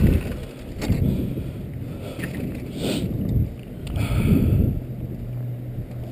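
Wooden dog sled's runners sliding and scraping over packed snow and ice, an uneven rumbling hiss that swells and fades as the sled is pulled along. A low steady hum comes in about two thirds of the way through.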